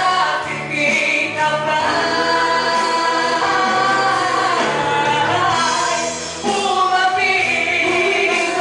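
A woman singing a gospel song live into a microphone over amplified musical accompaniment, holding long notes, with a short break in the phrase near the end.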